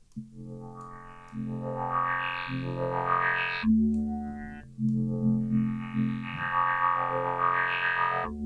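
A synth bass line from Ableton's Operator played through the Moog MF-105S MuRF filter bank, with the animation pattern on and synced to tempo. A sequencer steps through the fixed-frequency filters one at a time, so the bass's brightness shifts in a stepped rhythm. The phrase plays twice.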